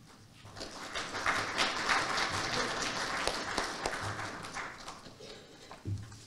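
Audience applauding, the clapping swelling about half a second in and dying away near the end.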